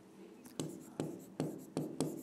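Writing on a blackboard: four short, sharp strokes about half a second apart, each fading quickly, starting about half a second in.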